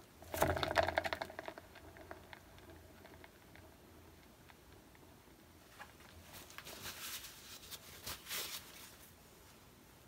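Paint-covered canvas spun by hand on a turntable, giving a faint, fine rattling whir that comes and goes, clearest from about six to nine seconds in.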